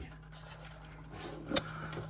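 A steady low hum under faint noise, with one sharp click about one and a half seconds in.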